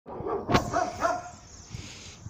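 A dog barking several times in the first second or so, then stopping.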